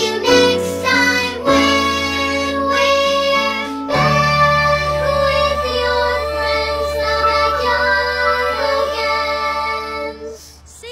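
Children's cartoon song: young character voices singing over an upbeat instrumental backing, settling into held chords with a sustained low note from about four seconds in.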